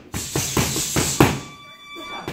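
Gloved punches landing on focus mitts in a quick flurry of about six strikes, the hardest about a second in, followed by a steady high-pitched electronic tone starting near the end.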